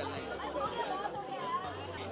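Overlapping chatter of several people's voices, nothing clearly worded.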